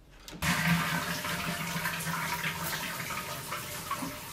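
Toilet flushing: rushing water starts suddenly about half a second in and runs on steadily, with a faint steady hum underneath.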